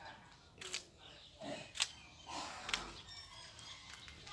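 Footsteps on a concrete lane: three sharp scuffs about a second apart, the middle one the loudest.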